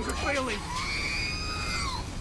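R2-D2's electronic shriek as Force lightning strikes it: a high whistling cry that rises slightly, then falls away over about a second and a half, after some brief sliding cries.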